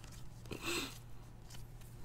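Trading cards sliding against each other as a stack is flipped through by hand: a faint, brief rustle about half a second in, over a steady low hum.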